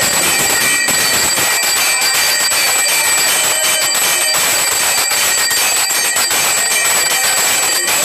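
Temple bells ringing continuously in a loud, rapid clanging din, with several held ringing tones over dense metallic strikes.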